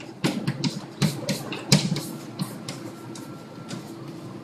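Chalk tapping and scratching on a blackboard as words are written, in quick, irregular strokes.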